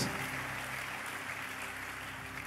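Large congregation applauding, a steady even patter of clapping that slowly dies down.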